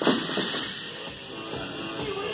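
Background music, with a sharp knock right at the start that fades out quickly.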